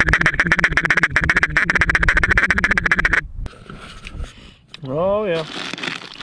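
Dux duck call blown by mouth in a fast, even run of short quacking notes that stops abruptly about three seconds in.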